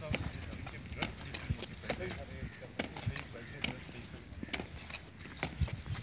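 Marching boots stamping on a brick path in a ceremonial high-step drill, a sharp strike roughly every half second.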